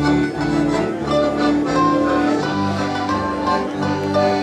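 Live country band playing an instrumental passage: sustained chords over a bass line that changes note every second or so, with short melody notes on top.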